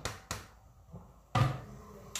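A plastic bowl knocked a couple of times against a wok as the last vegetables are shaken out of it, then a heavier thump about a second and a half in.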